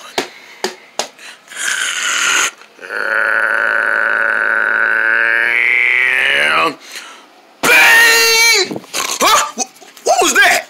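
A man making sound effects with his voice: a long, drawn-out growling tone lasting about four seconds, its pitch bending near the end, then a short, loud crashing burst, which the characters take for thunder. A few faint paper clicks come before them.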